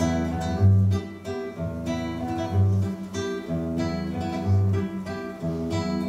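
Solo acoustic guitar playing the instrumental introduction to a song: ringing chords over a deep bass note that comes back about every two seconds.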